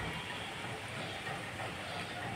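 Steady outdoor background noise, an even hiss-like wash with no distinct events.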